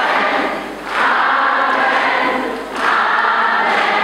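Congregation singing together, many voices blended in three phrases with short breaks between them.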